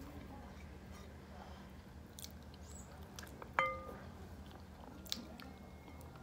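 Faint chewing and biting of chicken eaten by hand, with small scattered clicks. A single sharp, briefly ringing clink a little past halfway. A low steady hum lies under it all.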